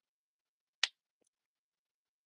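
A single short, sharp click just under a second in, followed by a much fainter tick.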